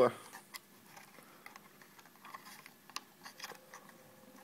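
A few faint, scattered clicks of small toggle switches being flipped on a sealed, composite-potted switch block that sits submerged in a bowl of water.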